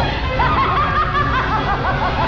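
A woman's high-pitched cackling laughter, a quick run of short repeated 'ha' sounds, over dramatic film music.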